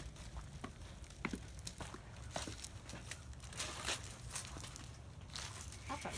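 Faint footsteps on a concrete walk and brick porch steps, with irregular light clicks.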